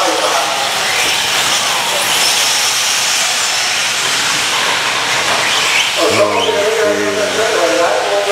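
A pack of electric 1/10-scale 4x4 short course RC trucks racing on a dirt track: a loud, steady hiss of motors and tyres, with faint whines rising and falling as the drivers throttle up and off.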